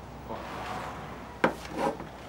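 A sharp wooden knock about a second and a half in, followed by a short rubbing scrape of wood, as a wooden box or board is handled.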